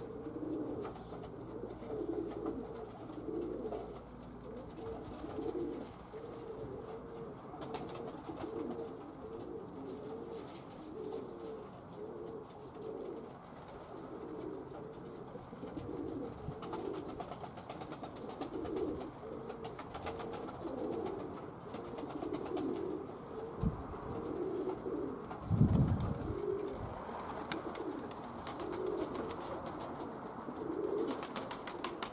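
Domestic pigeons cooing continually in a flock. Two short low thumps come about two-thirds of the way through, the second the loudest sound.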